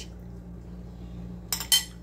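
A metal fork and a plate clinking twice in quick succession, about a second and a half in, as the plate holding the fork is set down.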